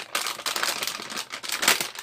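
Plastic bag of air-dry clay crinkling and rustling as it is handled, a dense run of small crackles.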